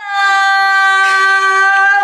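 A loud, steady, high-pitched held tone with many overtones that starts abruptly and stays on one pitch.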